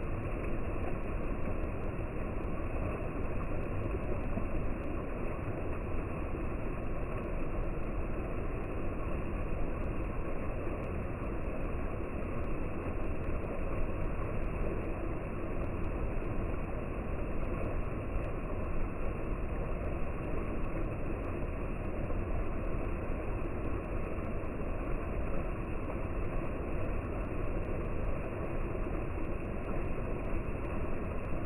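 A small waterfall pouring into a rock pool: a steady, even rush of water.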